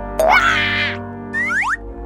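Children's background music with added cartoon sound effects: a loud, wobbling springy boing about a quarter second in, then a quick run of three rising whistle-like glides near the end.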